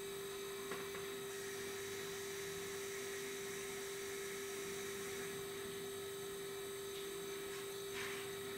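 A steady, unchanging hum on one pitch, with faint hiss behind it and two faint soft ticks, one under a second in and one near the end.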